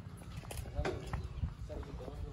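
Footsteps on a packed dirt lane, a few short sharp steps, with faint voices in the distance.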